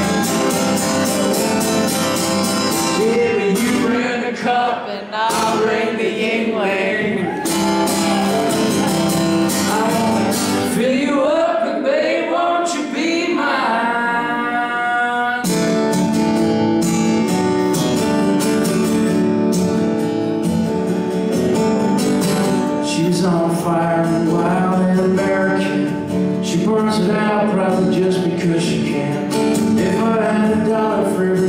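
A man singing to his own strummed steel-string acoustic guitar. The chords change about halfway through.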